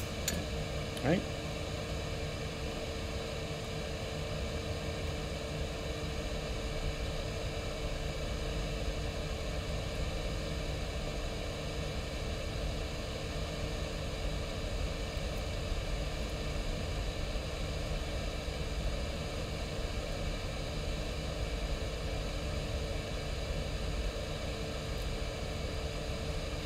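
Steady background hum and hiss with a faint constant tone, unchanging throughout.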